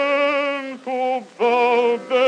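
Background song: a solo voice singing long held notes with vibrato, broken by two short pauses in the second half.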